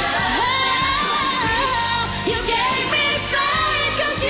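A woman singing a pop ballad live into a microphone over band accompaniment, holding long, wavering notes.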